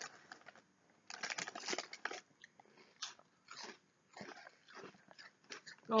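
Crunching and chewing of thick Bingo Mad Angles crisps: a cluster of sharp irregular crunches about a second in as a crisp is bitten, then sparser crunches while it is chewed.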